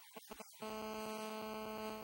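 A steady pitched hum with a row of evenly spaced overtones starts suddenly about half a second in, holds one pitch for about a second and a half, and stops sharply near the end. It is preceded by a few soft quick ticks.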